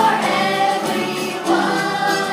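A group of children singing together with musical accompaniment.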